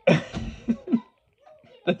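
A man laughing and coughing: a sudden harsh burst at the start, a couple of short laughs after it, a brief silence in the middle, then one more short burst near the end.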